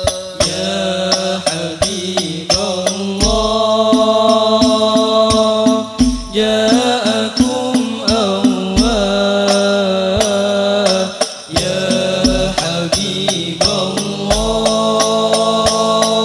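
Al-Banjari sholawat: a group of young male voices chanting Arabic devotional verses in unison. Terbang frame drums beat a steady pattern of sharp hits under them, with a deep drum stroke every few seconds.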